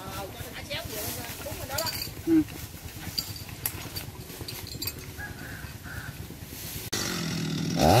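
A small chainsaw's two-stroke engine idling steadily for the last second, starting to rev up right at the end. Before it there is only low outdoor background and a brief spoken word.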